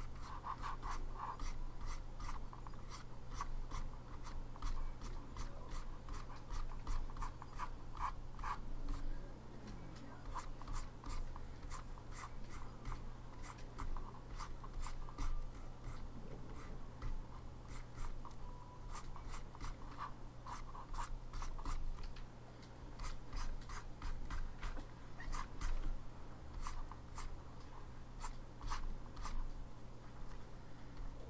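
Quick, short scratches of a stylus on a graphics tablet, a few strokes a second, over a steady low hum.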